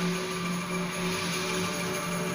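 An ensemble of bamboo angklungs shaken in tremolo, holding a steady low note with a few higher notes sounding over it.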